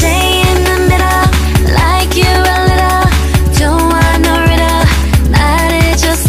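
K-pop song with female vocals over a deep, steady bass and a kick drum beating a little over twice a second.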